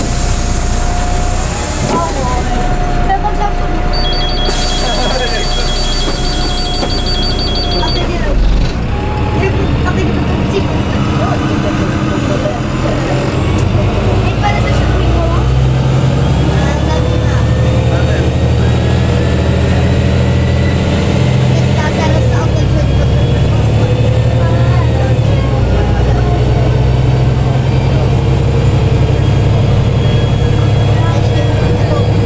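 Inside a Karosa B961 articulated city bus: a few seconds of even electronic beeping, a thump about eight seconds in, then the diesel engine pulling away, its low drone rising and stepping up in pitch several times as the bus gathers speed. Passenger chatter runs underneath.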